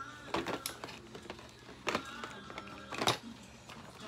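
Plastic clicks and knocks as a bottle is pushed and seated into the plastic reservoir holder on a spray mop's handle: about four sharp knocks, the loudest about three seconds in.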